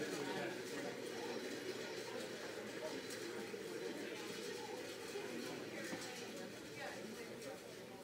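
Faint, indistinct voices of people talking, with no words made out, over a low steady room murmur.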